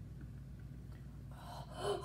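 A girl's quick, breathy gasp near the end, over a faint low steady hum.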